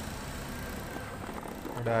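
Honda PCX scooter's single-cylinder engine idling steadily, a low rapid pulsing, running now on a freshly fitted battery after failing to start on the old one.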